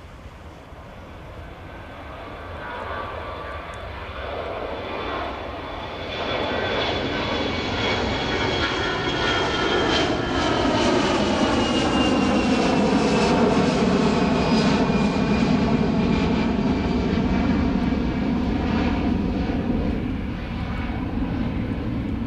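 The twin CFM56 turbofan engines of an Airbus ACJ319 (A319-115/CJ) run at takeoff power as the jet lifts off and climbs past. The sound grows louder to a peak about halfway through, then eases slightly, with a high whine that slides lower in pitch as it goes by.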